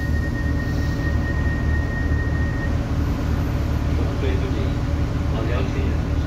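Irish Rail 29000 class diesel multiple unit idling while standing still, a steady low rumble heard from inside the passenger car. A thin steady high tone sounds over it and stops about three seconds in.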